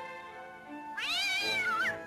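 A cat's single long meow about a second in, lasting about a second, its pitch rising and then sagging, over quiet orchestral background music.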